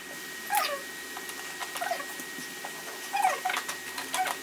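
An animal whining in three short whimpers that slide in pitch, a little under a second apart at first, then a longer gap before the last.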